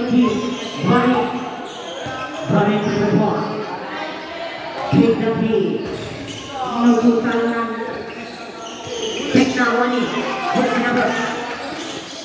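A basketball bouncing on a hard court floor, several separate sharp bounces at uneven intervals, with players and onlookers shouting throughout.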